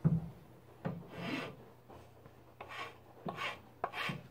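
Metal hand file scraping along a bare wooden walking stick shaft in about six uneven strokes, the first the loudest.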